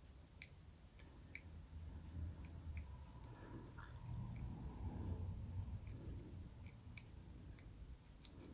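Dial of a small Master Lock combination padlock being turned by hand, giving faint, irregular clicks as it is worked past its gates, over low rubbing from the fingers handling the lock.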